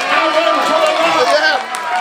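A man shouting excitedly in unclear words, with other voices calling out over him.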